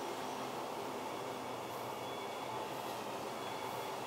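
Steady, even background noise with a faint hum, with no distinct events.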